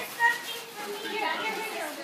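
A woman exclaims "Oh" and laughs over the chatter of several adults and children.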